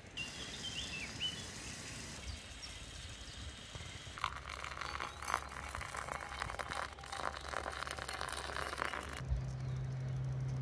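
A few bird chirps, then from about four seconds in water pouring from a steel pan into a paper coffee filter, splashing onto the grounds for about five seconds. A low steady hum takes over near the end.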